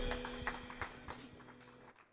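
The worship band's final organ-voiced keyboard chord dies away, with a held note lingering about a second. A few scattered light knocks and taps sound as it fades.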